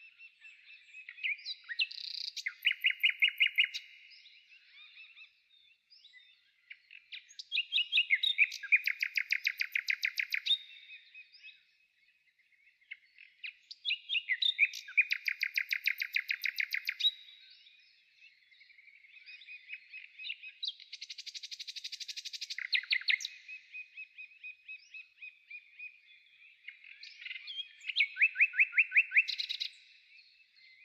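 A small songbird singing, its song repeated five times at fairly even intervals; each phrase is a fast trill of repeated notes lasting about three seconds.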